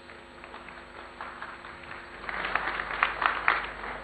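Audience applause in a hall, starting as scattered claps and building to a denser clapping in the second half.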